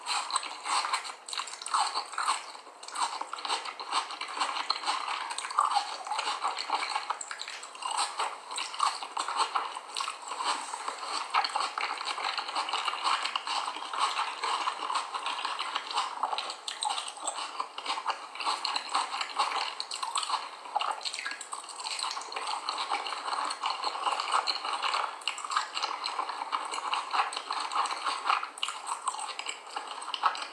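Raw cornstarch being chewed close to the microphone: a dense, continuous fine crunching and crackling.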